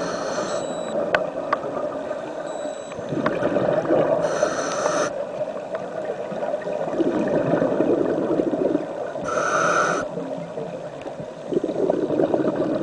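Scuba diver breathing underwater through a regulator: a short hiss with each breath in, three times about four to five seconds apart, with a steady rush of bubbling in between.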